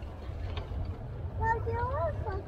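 A person's high-pitched voice calling out about one and a half seconds in, rising in pitch, over a low steady rumble.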